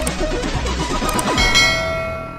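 Outro logo sting: glitchy sound effects over music, then a bell-like clang about one and a half seconds in that rings on as it fades.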